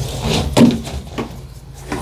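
Plastic vacuum hose and fittings being pulled out and handled: a few sharp knocks and clicks, the loudest about half a second in, between rubbing scrapes.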